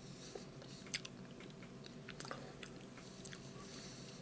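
Close-miked biting and chewing of a frosted Pop-Tart pastry, with a few sharp crunches, the loudest about a second in.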